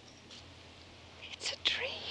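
A short whispered utterance, breathy and quiet, about one and a half seconds in, after a second of low room hiss.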